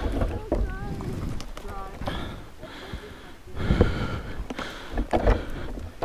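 Branches and brush rustling and cracking in irregular bursts as a person pushes through dense bushes, with breathing between the bursts.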